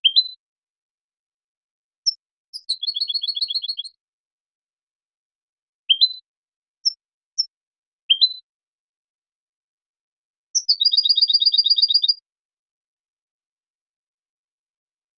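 European goldfinch (Carduelis carduelis) song: short upward-sliding notes and brief high chips separated by silences, with two fast trills of about a second and a half each, one about three seconds in and the other about eleven seconds in. The birdsong is clean, with no background noise.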